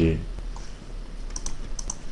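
Four short, sharp computer clicks in two quick pairs, about a second and a half in, from a keyboard or mouse being operated at the desk.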